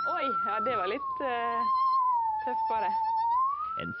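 Musical saw played with a bow: one wavering tone that slides slowly down in pitch and then rises again near the end.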